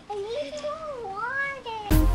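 A young child's long, drawn-out vocal exclamation, wavering up and down in pitch and rising near the end. Music cuts in suddenly just before the end.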